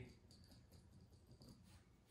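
Near silence: room tone, with faint light scratching of a marker on leather.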